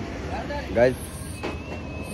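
Low, steady rumble of road traffic, with a thin, steady high whine coming in during the second half.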